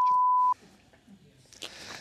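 Censor bleep: a steady single-pitched tone dubbed over a swear word, cutting off sharply about half a second in. After it there is only low studio room sound.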